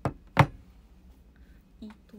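Two sharp knocks about a third of a second apart, the second louder and heavier, followed by a brief faint vocal sound near the end.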